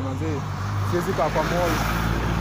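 A large bus passing close by, its engine droning low and growing louder. A man's voice talks over it.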